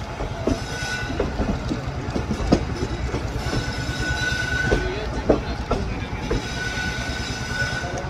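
Passenger train coaches rolling out of a station, heard from an open doorway: a steady rumble with irregular clacks and knocks as the wheels run over rail joints and points. A thin high squeal from the wheels comes and goes three times.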